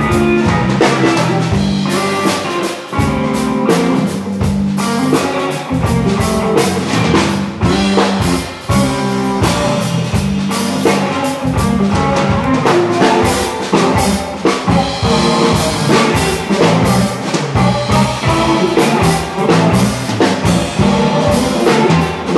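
Live instrumental trio of electric guitar, electric bass and drum kit playing.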